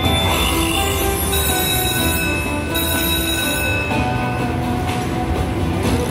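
Buffalo Xtreme slot machine playing its bonus sounds: held electronic tones in several pitches, changing in steps every second or so, over a steady low casino rumble. The sounds go with a coin symbol landing in the free games, which adds five free games.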